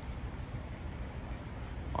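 Faint, steady rush of water running through a canal lock's open paddles.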